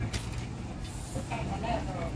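Low, steady engine rumble of street traffic, with indistinct voices in the background.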